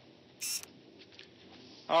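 Quiet courtroom room tone, broken by one short hissing burst about half a second in and a few faint ticks; a man starts speaking at the very end.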